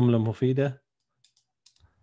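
A voice speaking briefly in the first second, followed by a few faint, short clicks.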